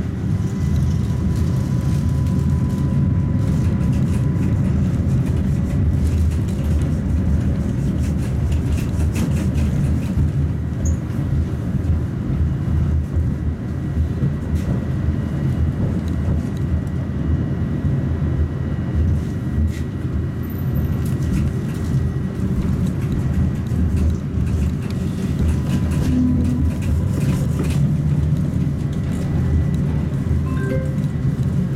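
Tatra T3 tram (MTTE modernisation) heard from inside the passenger cabin while running along the track: a steady low rumble with many short knocks and clicks throughout, and a faint steady high whine that comes and goes.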